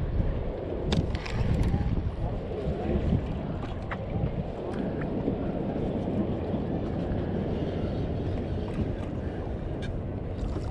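Wind buffeting the microphone on an open boat at sea, a steady low rumble with the wash of the water, broken by a few brief sharp clicks.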